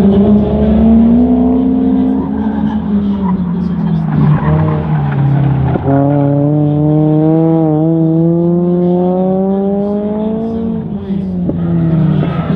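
Autocross car's engine running hard around the cone course, its pitch rising and falling as it accelerates and slows, then a long steady climb in pitch on a sustained pull through the second half.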